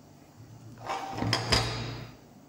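Handling sounds: a few soft rustles and two short knocks, the second the loudest, as a phone is set down on a wooden table beside a folding fabric solar panel.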